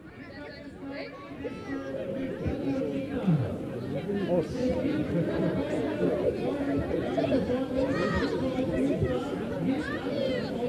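Indistinct chatter of several people talking at once, rising from quiet over the first couple of seconds.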